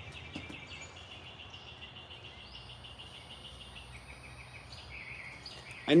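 Faint outdoor ambience with a steady, high, rapidly pulsing chirr from wildlife in the surrounding trees, breaking up about five seconds in.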